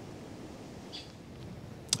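Quiet, steady background hiss with no distinct event, apart from a faint brief tick about a second in and a short click just before the end.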